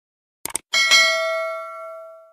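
A quick double mouse click, then a small bell struck and left ringing, fading slowly: the click-and-notification-bell sound effect of a subscribe-button animation.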